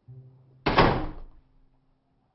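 A door shutting with a single loud thud about two-thirds of a second in, dying away over about half a second.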